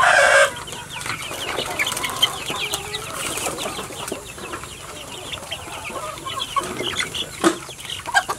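A pen of young chickens calling: many short, high peeps and clucks overlapping all the way through, after a brief loud burst at the very start.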